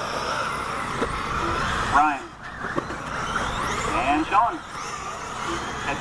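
Electric 1/8-scale RC buggies racing on a dirt track, their motors whining up and down in pitch as they accelerate and brake, with a sharp knock about two seconds in.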